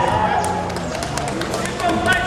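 A man's voice holding a long drawn-out call through the PA, with a scattering of sharp claps or knocks from about half a second in.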